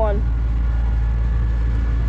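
A tractor engine running steadily at idle, a constant low drone with an even hum.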